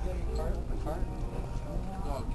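Faint voices in the background over a steady low hum, with a few light clicks.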